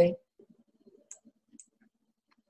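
A woman's voice ends a word at the very start, then a few faint clicks of a computer mouse, two of them sharper, a little past halfway.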